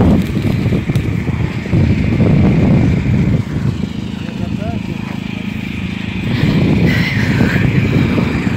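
Electric arc welding on steel: a steady rough crackling noise with a low rumble underneath.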